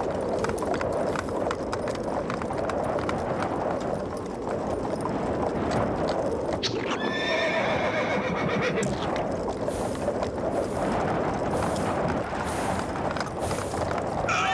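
Horse sound effects in an animated film: hooves clattering steadily, with one horse neigh lasting about two seconds, starting about halfway through.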